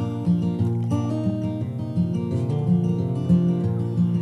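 Acoustic guitar playing the chords of a slow folk-country song, an instrumental passage with no voice.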